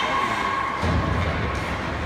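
Ice hockey game noise in an indoor rink: a held call from the crowd fading out within the first second, then a low rumble of play on the ice.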